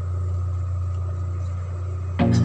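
Steady low drone of a ship's running machinery, even in level with no change.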